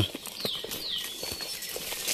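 Scattered footsteps and rustling of plants along a dirt trail through undergrowth, with two short falling bird chirps about half a second in.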